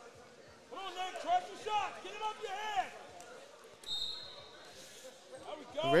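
Voices calling out across a large wrestling hall, with scattered dull thumps on the mats. A short, high whistle blast sounds about four seconds in.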